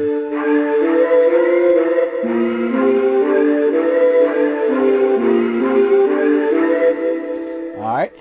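Output Exhale vocal instrument in Kontakt, played from a MIDI keyboard: sustained layered vocal chords whose notes shift in steps several times, stopping abruptly near the end.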